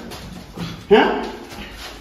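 A young man's pained, whimpering cry: one short vocal wail that starts sharply about a second in and fades away.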